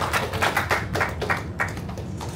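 Audience clapping, separate hand claps following close on one another, thinning out and stopping about three-quarters of the way in.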